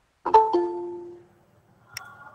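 Electronic notification chime: two quick plucked-sounding notes that ring and fade out over about a second. A sharp click follows near the end.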